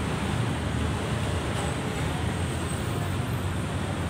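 Steady outdoor background noise: an even low rumble with hiss above it, unchanging throughout.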